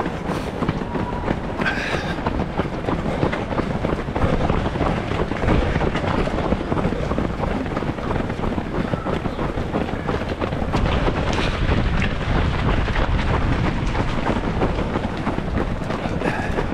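Running footfalls on asphalt and wind rushing over a GoPro carried by a runner: a continuous rhythmic pounding under a steady rushing noise.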